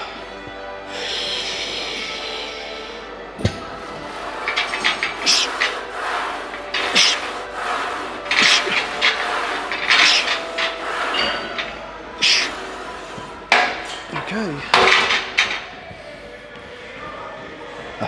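A man's sharp, hard breaths through a set of Smith machine incline bench presses, in short irregular bursts, with one sharp clank of the bar about three and a half seconds in. Background music underneath.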